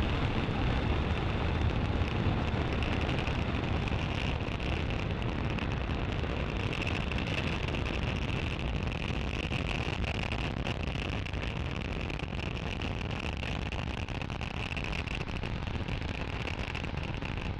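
Falcon 9 first stage's nine Merlin 1D engines at full thrust just after liftoff: a steady, deep roar of rocket noise that slowly fades as the rocket climbs away.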